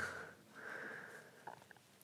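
A man's drawn-out 'ah' fades out, then comes a short faint breath through the nose and a light click.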